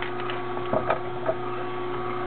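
Omega masticating juicer running with a steady low hum as its slowly turning auger grinds Belgian endive. A few crisp crackles from the endive leaves come in the middle.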